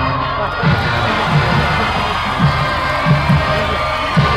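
Brass marching band playing, with sousaphones and other brass holding sustained notes over repeated bass-drum beats, and crowd noise mixed in.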